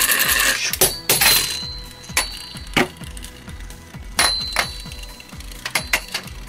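A Mortal Shark G metal spinning top grinding loudly as it spins against the plastic Attack Dish stadium, then about seven sharp clicks at irregular intervals, some with a brief high metallic ring, as it knocks about after leaving the dish.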